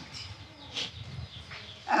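Faint background ambience with one brief, distant animal call about a second in.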